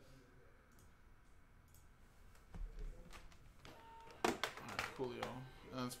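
Clicks and knocks from a computer mouse and keyboard at a desk: a few faint clicks, then a low thump and several sharper clicks around the middle. A man's voice starts near the end.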